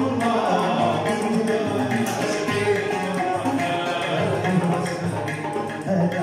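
Live ensemble of plucked strings, an oud, two banjos and a guitar, playing a melody together over a steady beat on a hand drum.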